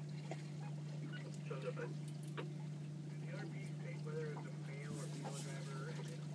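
Boat's outboard motor running at a steady, low idle hum, with faint voices over it.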